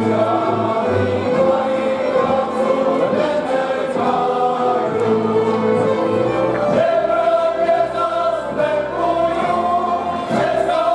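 A group of men singing a Moravian Slovácko folk song together, with a folk string band of fiddles and double bass playing along.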